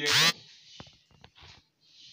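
A brief, loud squeak of a felt-tip marker dragged across a whiteboard, followed by a few faint ticks.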